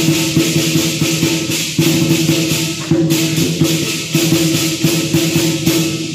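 Lion dance percussion ensemble playing: a big drum beating under a continuous wash of crash cymbals, with a gong ringing steadily beneath. The cymbals break off briefly twice, about two and three seconds in.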